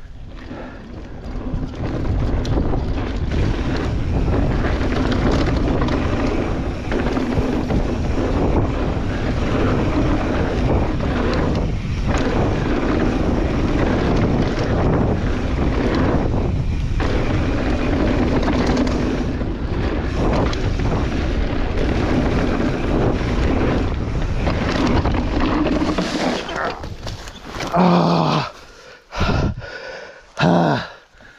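Wind buffeting the camera microphone while a mountain bike descends a downhill track at speed, a loud, steady rush of noise with a low rumble from the ride. It eases off near the end, broken by a few short, loud bursts.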